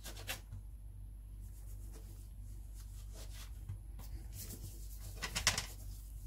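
Faint scraping and rubbing of a metal ring cutter pressed through soft dough onto the work surface, with a few brief scratchy strokes a little before the end, over a low steady hum.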